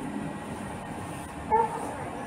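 A steady low rumbling noise, with a short pitched tone sounding loudly about one and a half seconds in.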